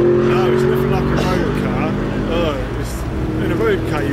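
A car engine running nearby with a steady low hum, fading out about two and a half seconds in, under people talking.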